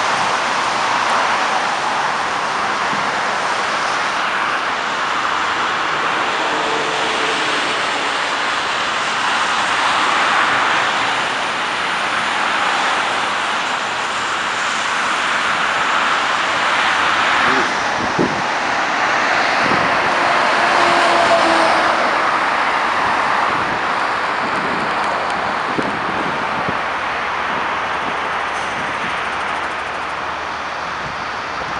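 Continuous noise of tyres and engines from cars and trucks passing on a multi-lane expressway, with a few faint short tones and a couple of short knocks about eighteen seconds in.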